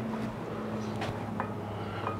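A steady low hum with a few faint, light clicks as a damascus knife blade in a plastic holder is dipped into a glass jar of ferric chloride etchant.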